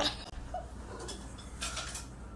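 A light clink against a stainless steel mixing bowl right at the start, then faint scraping and handling as a hand works in the sugar inside it.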